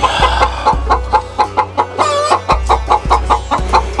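Game chickens cackling in alarm: a rapid run of sharp clucks, about four or five a second, with a longer drawn-out call about halfway, set off by a snake being caught in their coop.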